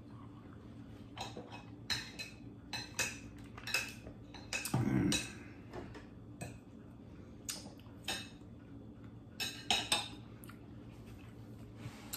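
Knife and fork clinking and scraping against a dinner plate in irregular, separate strikes as food is cut and eaten, with a brief low sound about five seconds in.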